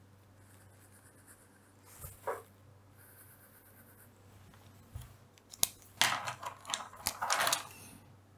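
Fineliner pen strokes scratching across paper, starting about five seconds in, with a sharp click among them, as horizontal lines are drawn on a sheet.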